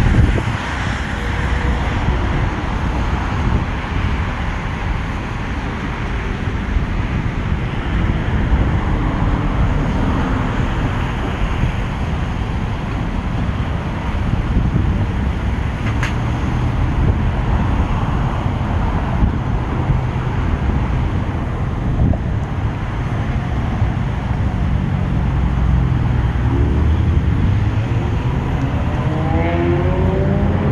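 Road traffic noise: a steady rumble of passing cars. It swells in the last few seconds as a vehicle speeds up with a rising engine note.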